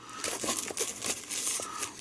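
Clear plastic packaging bags crinkling as they are handled, an irregular run of small crackles and rustles.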